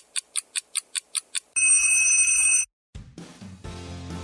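Timer sound effect: about nine quick ticks, then a loud steady high ring lasting about a second, like a timer going off. Background music fades in near the end.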